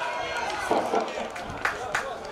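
Voices shouting on an outdoor football pitch during a goalmouth scramble, with two sharp knocks near the end as the ball is struck.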